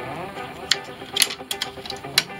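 Scattered light clicks and taps, about five spread through the two seconds, from handling the sewn paper-pieced work at a stopped sewing machine.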